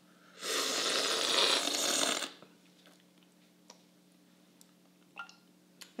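Coffee slurped hard from a cupping spoon: one long, airy hiss of about two seconds, starting just under half a second in. This is the forceful cupping slurp that sprays the coffee across the palate. A few faint light clicks follow.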